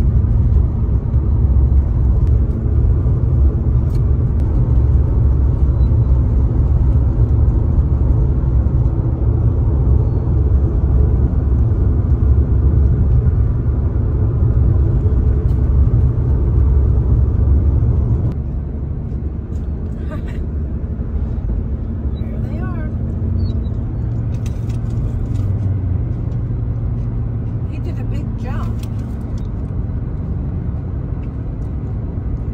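Road noise inside a moving vehicle: a steady low rumble of tyres and engine, which drops in level about two-thirds of the way through.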